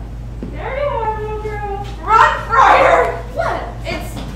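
A young actor's voice: a long, high, drawn-out cry that falls slightly in pitch, then a louder, harsh shout about two seconds in.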